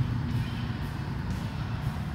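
Low, steady rumble of road traffic.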